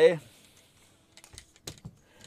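A few light, sharp clicks and knocks in quick succession, about a second in, after a near-silent pause.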